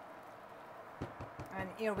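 Pasta being stirred with a silicone spatula in an enamelled cast-iron pot: a quick run of soft knocks begins about a second in.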